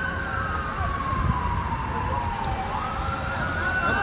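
Siren wailing: one slow fall in pitch lasting about two and a half seconds, then a quick rise back up near the end, over a low rumble.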